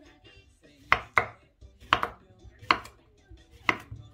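Kitchen knife slicing a cucumber on a wooden cutting board: five sharp knocks of the blade meeting the board, the first two close together about a second in, then roughly one a second.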